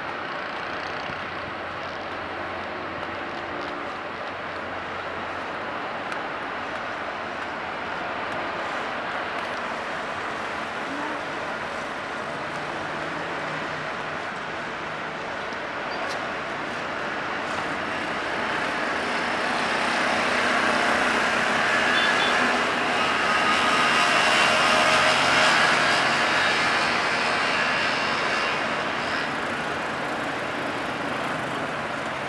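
The ferry Blue Star Paros manoeuvring into harbour: a steady roar of its engines and propeller wash. It grows louder over the second half as the ship draws level, then eases slightly near the end.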